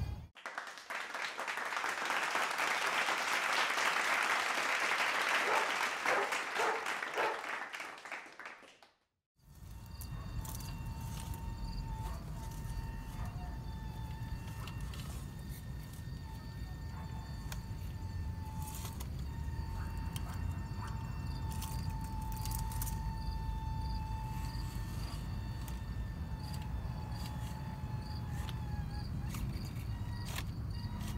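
A loud crackling hiss for about nine seconds, cut off abruptly. It is followed by the steady, slightly wavering whine of the WPL C24 1:16 RC crawler's brushed electric motor and gears as the truck creeps over rocks, over a low rumble with scattered clicks.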